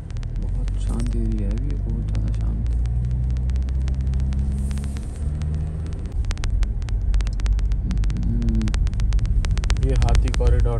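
Car engine and road noise heard from inside the cabin while driving: a steady low rumble whose pitch shifts about halfway through. Rapid small clicks run through the second half, with low voices murmuring briefly.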